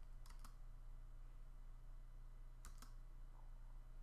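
Two faint, quick double clicks about two and a half seconds apart, like controls being pressed on a computer, over a low steady hum.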